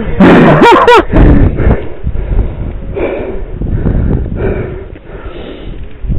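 A man laughs for about a second, then breathes hard, with rough rumbling noise on the helmet-camera microphone.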